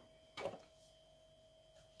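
Near silence, with one light knock about half a second in as kitchenware is handled on the table.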